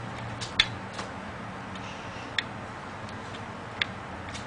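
A few sharp, light clicks, the loudest about half a second in, another about two and a half seconds in and one near the end, over a steady background hiss.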